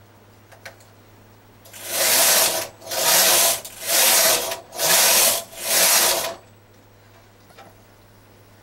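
Singer 155 bulky knitting machine carriage pushed back and forth across the needle bed, knitting rows of a narrow mitten thumb. There are five loud sliding passes about a second apart, starting about two seconds in.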